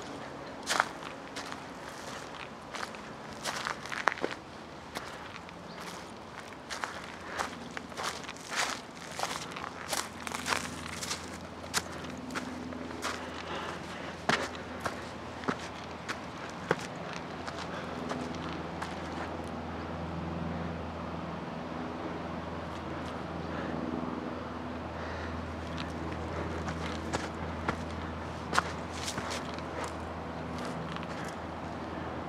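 Footsteps crunching over dry leaf litter and sandy ground, dense and irregular in the first half and sparser later. From about ten seconds in, a steady low hum sets in beneath them.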